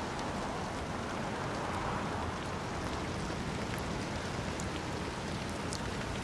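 Steady rain falling on a city street: an even, continuous hiss.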